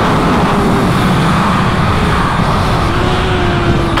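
2018 Kawasaki ZX-6R's inline-four engine running at speed on track, heard from the rider's seat under heavy wind rush on the microphone. The sound stays steady and loud throughout.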